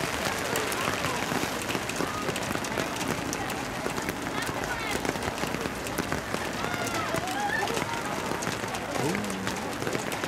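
Steady hiss of rain with fine drop ticks, with a few distant voices calling out on and around the field.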